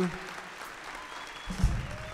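Audience applauding. A loud, low thump comes about one and a half seconds in.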